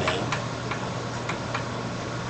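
Chalk tapping on a chalkboard while writing: a string of light, irregularly spaced clicks.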